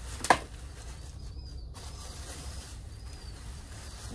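Black plastic garbage bag crinkling and rustling as it is unwrapped by hand from a heavy part, with one brief sharp sound about a third of a second in.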